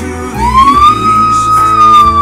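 Slide whistle playing one long note that slides up into pitch about a third of a second in, then holds and sags slightly, over a band's backing recording.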